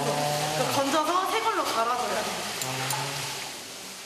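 A woman's voice, talking and laughing, over a steady hiss; it fades out in the last second.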